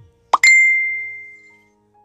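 An editing sound effect: a quick rising pop about a third of a second in, then a single bright ding that rings out and fades over about a second and a half.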